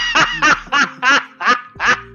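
A person laughing in a run of short, repeated ha's, about three a second.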